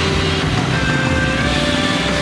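Triumph Thruxton RS's 1200 cc parallel-twin engine running on the move, mixed under a background music soundtrack.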